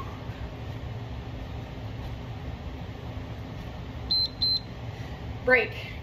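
Two short, high electronic beeps about four seconds in, from an interval timer marking the end of a 20-second Tabata work round, over a steady low hum.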